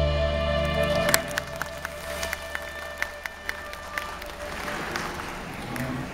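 A live band's final chord is held and cut off with a sharp accent about a second in, followed by scattered hand claps that spread into audience applause.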